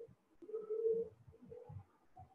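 A bird cooing in low, wavering calls, the loudest call running from about half a second to one second in.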